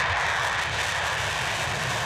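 F-4 Phantom fighter jet taking off on afterburner: steady, even jet engine noise with no change in pitch.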